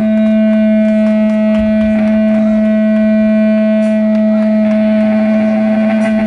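Electric guitar amplifier feedback drone between songs: two loud, steady held tones, the upper one wavering slightly in the last couple of seconds.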